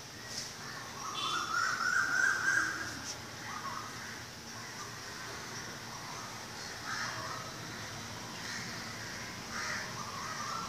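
Birds calling, one longer call from about a second in and a few shorter calls later, over steady background noise.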